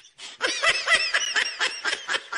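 A person laughing in rapid high-pitched bursts, about seven a second, starting about half a second in after a brief pause.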